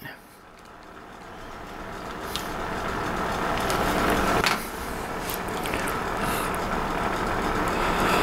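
A steady rumbling noise that swells gradually over the first four seconds and then holds, with a few faint clicks on top.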